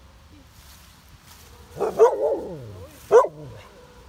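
A medium-sized dog barking: a short cluster of barks about two seconds in, then one more bark about a second later, each falling in pitch.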